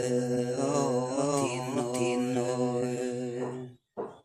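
A solo voice singing a Red Dao folk song (hát lượn) in long, drawn-out notes that waver and bend in pitch, in a chant-like style. The voice stops just before the end, and a short burst of sound follows.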